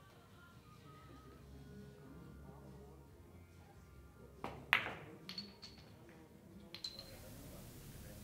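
A billiards shot: the cue tip strikes the cue ball about four seconds in, then a sharp ball-on-ball click follows, the loudest sound. Several lighter clicks come after it as the balls collide and wooden pins are knocked over on the five-pin billiards table.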